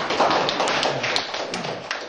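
A small audience clapping: many irregular, overlapping claps.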